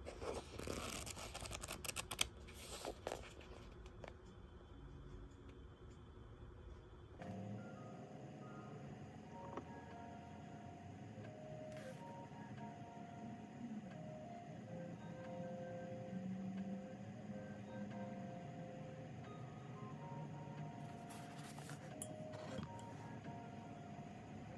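Paperback pages rustled and flicked by hand for the first few seconds, then soft, calm background music with long held notes comes in about seven seconds in and carries on.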